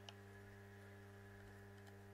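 Near silence: a low, steady electrical hum, with a faint click right at the start and a couple of faint ticks near the end.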